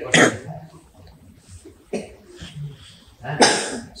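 A person coughing in short bursts: one just after the start, a few small ones in the middle, and a louder one near the end.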